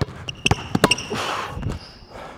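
Basketball dribbled on a hardwood gym floor: a quick run of sharp bounces, several close together in the first second, with a brief scuffing noise in the middle.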